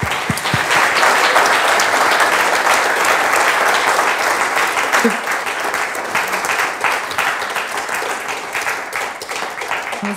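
Audience applauding, many hands clapping at once, strongest in the first few seconds and slowly thinning toward the end.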